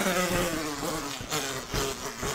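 A man's high-pitched, wheezing laughter, breathy and broken, getting quieter.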